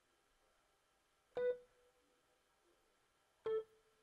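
Two single keyboard notes from the Xpand!2 software instrument, each sounding briefly as it is placed in the piano roll. The first comes about a second and a half in and fades over about a second. The second, near the end, is slightly lower and shorter.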